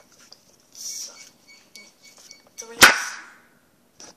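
Hands handling a lump of slime on a tabletop: a soft rustle about a second in, then one sharp knock near three seconds in, the loudest sound.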